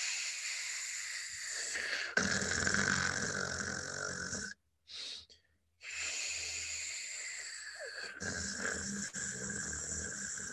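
A drawn-out, raspy 'kh' throat sound, the voiceless velar fricative, slid slowly back toward the uvula so that it sinks in pitch. Partway through it turns throatier, with a low buzz of voicing added, as it becomes a uvular R. It is done twice, each time for about four to five seconds, with a short break about four and a half seconds in.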